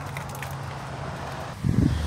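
Steady outdoor background noise with a low hum and wind on the microphone. A brief low rumble of wind buffeting comes near the end.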